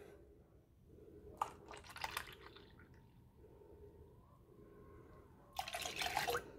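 Milk poured from a small carton into a metal saucepan of milk and cream: faint drips and small splashes, then a louder gush of pouring near the end.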